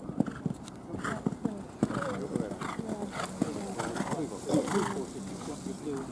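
Hoofbeats of a horse cantering over a gravel arena surface: a run of dull, uneven knocks.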